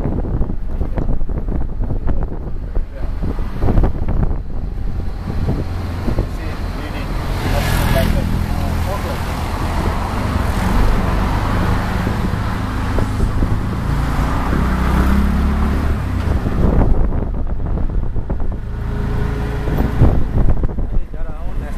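Ride in an auto-rickshaw: its small engine runs with a low, steady note that grows stronger through the middle stretch, over road and traffic noise coming in through the open cab.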